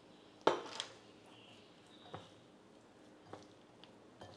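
Bitter gourd slices coated in spice masala being mixed by hand in a ceramic bowl: a sharp clatter about half a second in, then a few quieter clicks and soft squishing of the wet pieces.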